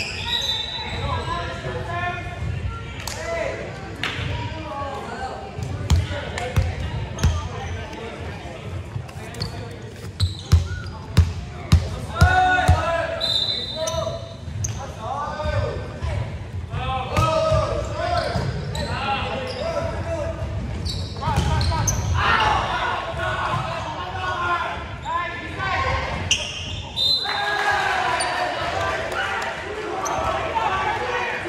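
A volleyball bouncing on a hardwood gym floor, four or five bounces about half a second apart near the middle, with a few other ball impacts earlier. Voices of players and spectators talk and call throughout, echoing in the large hall.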